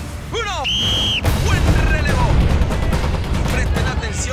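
A starter's whistle blows one short, steady blast about a second in, the signal that starts the race. Loud, dense noise of music and shouting voices follows at once.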